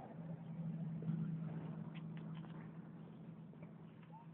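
Car engine idling: a steady low hum that slowly fades.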